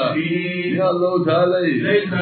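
A man's voice chanting a religious recitation into a microphone, over a steady low hum.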